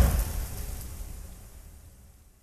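The deep tail of a dramatic boom hit or music sting from a TV preview, dying away steadily over about two seconds.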